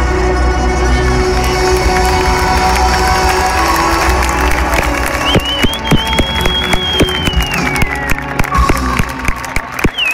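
Live electro-tango band music on held chords, dying away, as the crowd starts cheering and clapping. Midway a long, high whistle sounds and falls in pitch at its end.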